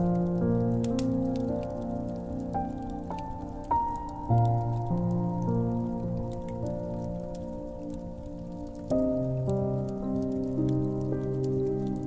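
Slow piano music: sustained notes and chords, a new one struck every second or two. Scattered small pops and crackles of a wood fire run beneath it.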